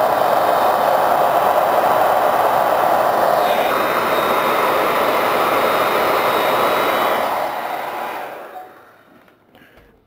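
Hair dryer on a low setting blowing steadily, its tone shifting slightly a few seconds in. It dies away about eight seconds in, leaving a few faint clicks.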